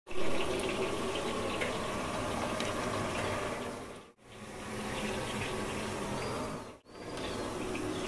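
Steady rushing of running water, like a tap, with faint ticks in it, broken by two brief dropouts about four and seven seconds in.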